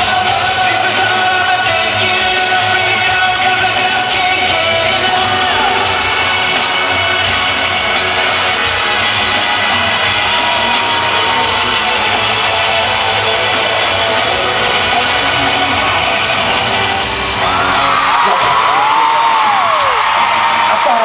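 Live pop-concert music played loud through an arena sound system, with singing and fans yelling and whooping. Near the end the music changes to a new section, and a voice glides up and down in pitch.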